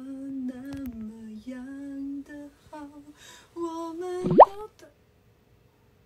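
A woman singing a slow Mandarin love-song line unaccompanied, her voice holding and stepping between notes. About four seconds in comes a short, loud pop sound effect that sweeps quickly upward in pitch.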